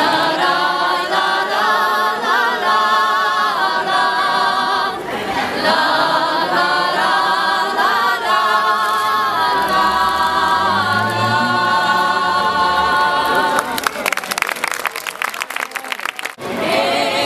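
Women's vocal quartet singing a cappella in harmony, the voices holding and sliding between long notes. The song ends about fourteen seconds in and hand clapping follows.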